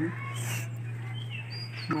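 Steady low hum with a few faint, short, high-pitched gliding calls from an animal, one near the middle and a falling one near the end.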